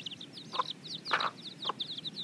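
Chicks peeping in a rapid, unbroken stream of short, high, falling cheeps, while the hen clucks three times.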